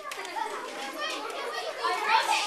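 Children's voices: several children chattering and talking over one another, with no single clear line of speech.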